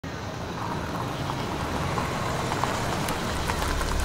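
A car's engine running as the car rolls in, its low rumble growing louder near the end.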